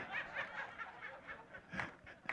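Soft chuckling laughter, quiet and broken into short breaths.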